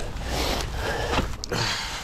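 Thorny hedge branches scraping and rustling against the rider and his bike as he pushes into the hedge, over a low wind rumble on the microphone.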